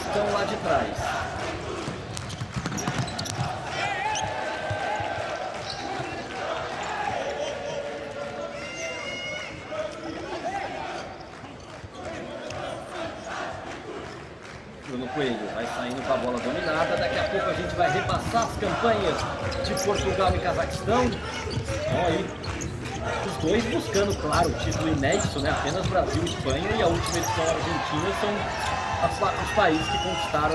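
Futsal ball being kicked and bouncing on an indoor court, with players' voices calling out, echoing in a large hall.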